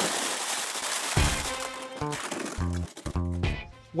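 A heap of plastic cassette tapes and cases spilling out of a suitcase in a dense rattling clatter that fades out after about a second, over background music that then carries on alone.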